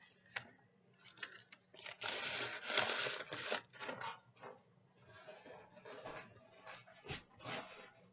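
Paper rustling and sliding as a pile of Christmas cards and envelopes is pushed back into its packaging, loudest about two to three and a half seconds in, with softer rustles and a few light clicks after.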